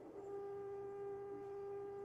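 A faint steady electrical hum in the video-conference audio: one held tone with a few overtones above it.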